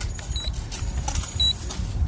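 Wind rumbling on the microphone, with a short high electronic beep about once a second from the drone's remote controller.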